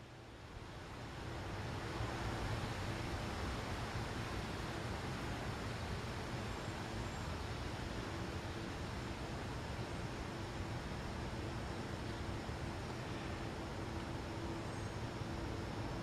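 Steady outdoor background noise, swelling up about a second in, with a faint low electrical hum underneath from a mercury vapor lamp ballast being energised through a variac.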